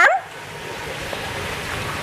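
A steady, even hiss of background noise that grows slightly louder, after a voice trails off at the very start.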